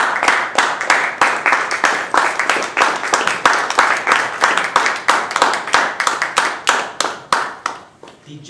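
Audience applauding, with individual hand claps clearly distinct, thinning out and dying away near the end.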